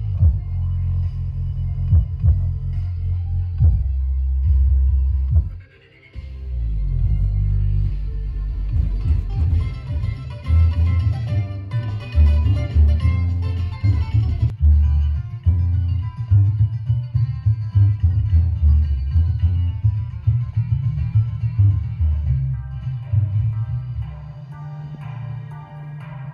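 Music played loud through a DJ sound system with its tweeters off, almost all bass and low end with very little treble, coming largely from a carpeted folded-horn bass cabinet. The music drops out briefly about six seconds in and then starts again.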